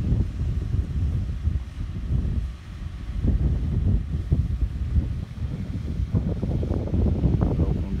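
Wind buffeting the microphone: a low, ragged rumble that rises and falls in gusts.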